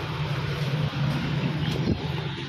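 Steady low hum under an even background hiss.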